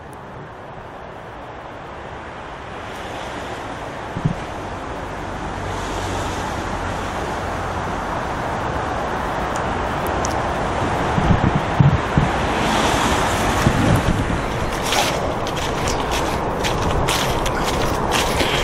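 Wind blowing on the microphone, a rushing noise that builds steadily over about ten seconds and then stays strong, with a few brief clicks and rustles in the second half.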